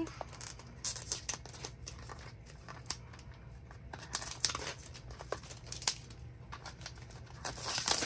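Hands peeling and crinkling the clear plastic wrap off a small cardboard blind box, in short irregular crackles and tearing rustles, loudest near the end.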